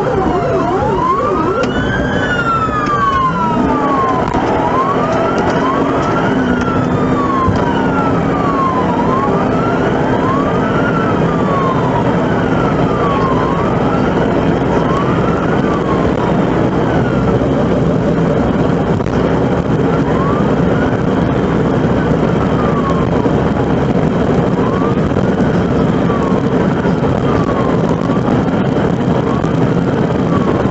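Police car siren wailing, its pitch sliding up and down over and over, with a second siren briefly overlapping it early on. A steady rumble of engine and road noise from the moving squad car runs underneath.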